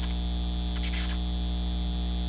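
Neon-sign sound effect: a steady electrical buzzing hum, with short crackling sizzles at the start and about a second in as the neon tubes flicker on.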